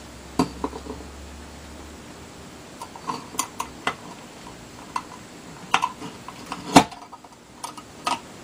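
Scattered small clicks and taps of a plastic solar charge controller case being handled and prodded with a thin metal tool, the loudest near the end.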